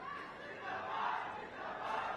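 A large crowd shouting and cheering together, a continuous mass of voices with no single speaker standing out.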